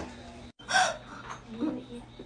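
A person's sharp, startled gasp, followed about a second later by a brief low vocal sound.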